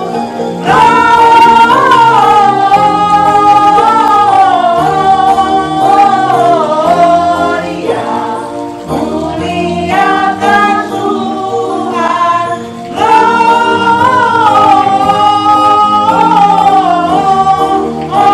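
A small group of women singing together into microphones over steady instrumental backing, with a short break in the singing about thirteen seconds in.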